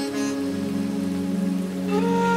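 Ambient meditation music: a low, steady sustained drone under an even rain-like hiss, with new higher held notes entering near the end.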